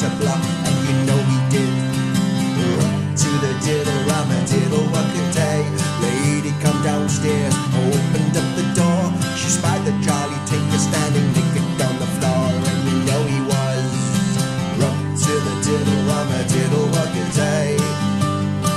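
Instrumental break in an English folk song: acoustic guitar playing a lively run of plucked notes over a steady accompaniment, with no singing.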